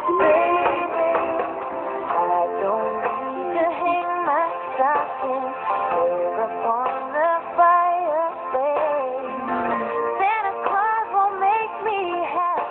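A song playing: a wavering sung melody over steady instrumental backing.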